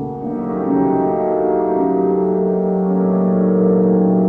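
Early 1950s tape-recorder music: several sustained, overlapping tones layered into a steady drone, horn-like in colour. A low tone holds throughout, while a middle tone enters and drops out in short steps about every second.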